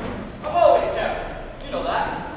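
Speech: a young actor's voice speaking lines through a handheld microphone in a large hall.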